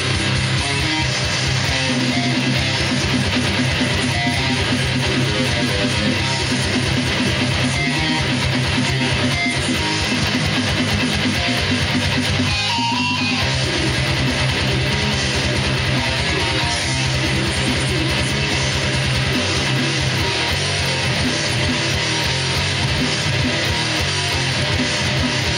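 Electric guitar playing a fast metal riff, loud and continuous, with a rapid even pulse in the low end that quickens about halfway through.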